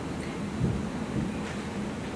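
Low steady rumble of room noise, with a dull thump a little over half a second in and a softer one about half a second later.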